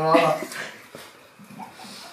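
A person's voice holding one drawn-out vocal sound that ends about half a second in, followed by a hush with only faint small sounds.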